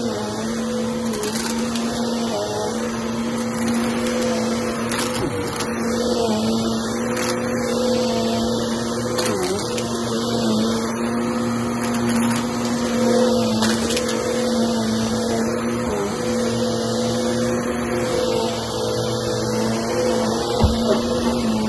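Bissell upright vacuum cleaner running on a rug: a steady motor hum that dips briefly in pitch now and then, with the rush of air swelling and fading about every two seconds as it is pushed back and forth.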